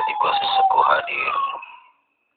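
Eerie drawn-out wail in a woman's voice, a ghost sound effect, its pitch slowly falling, fading out near the end.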